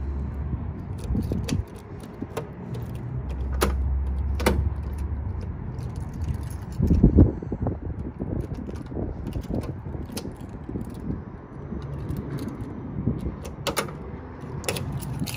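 Keys jangling on a ring while the key works the door lock of a 1970 Ford Mustang, giving several sharp clicks; the loudest is about seven seconds in. The lock is a little sticky.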